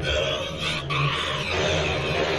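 Horror film soundtrack: a harsh screeching sound that rises and falls about half a second in, over a low rumbling drone.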